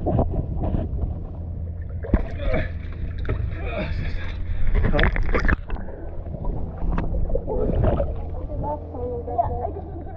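Water splashing and sloshing around a swimmer in a wetsuit beside a boat hull, partly heard with the microphone underwater, over a steady low hum. The splashing is busiest between about two and six seconds.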